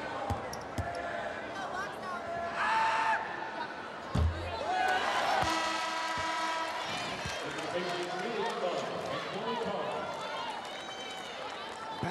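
Basketball bounced a few times on a hardwood court at the free-throw line, with sharp bounces in the first second and a heavier thud about four seconds in, over arena crowd voices.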